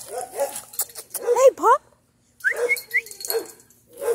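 A dog whining and yipping: several short cries that rise sharply in pitch in quick succession about a second and a half in, then a few brief high chirps near the end.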